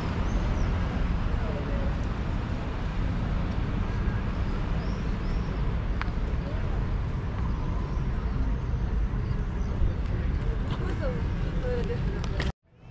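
City street ambience: a steady low rumble of road traffic with scattered voices of people walking by.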